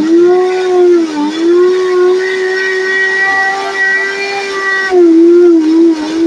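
Silver Crest heavy-duty blender running with its jar empty: a loud, steady motor whine. Its pitch sags briefly about a second in, then drops lower and louder for a moment near the end.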